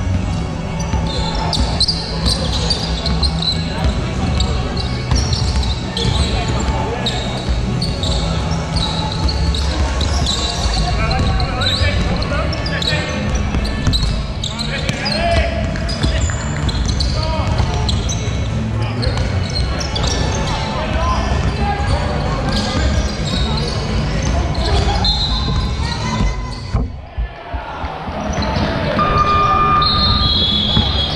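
Sounds of a basketball game on a hardwood court: the ball being dribbled and players' shouting voices, with short high squeaks, all echoing in a large indoor hall.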